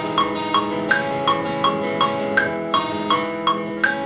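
Metronome click track at about 160 beats per minute, with a higher-pitched click on every fourth beat, playing over sustained, ringing chords from studio playback.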